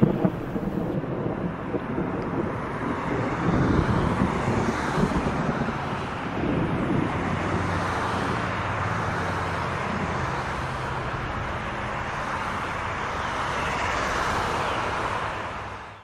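Steady rushing noise like wind on the microphone, with a faint low drone beneath it; it fades out at the very end.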